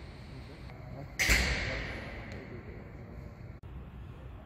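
A single sudden bang about a second in, fading out with a long echo as in a large hall.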